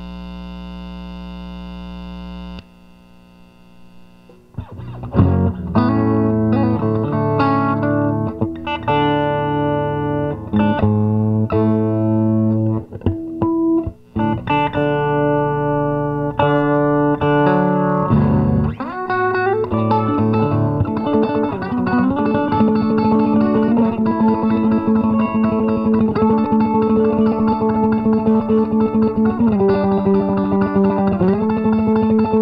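Electric guitar (the Esquire nine-string) played through a 1-watt amp into an Ampeg 8x10 cabinet. A held chord cuts off after about two and a half seconds. Single notes and chords are then picked, settling after about twenty seconds into a steady fast-picked pattern over ringing notes.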